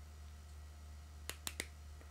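Three quick, sharp plastic clicks about a second and a half in: a pair of Julbo sunglasses' clip-on side shields being pushed into the hinges as the arms are folded shut.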